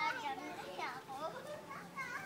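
Children's voices calling and squealing while they play, high-pitched and shifting, with one sharp squeal just under a second in.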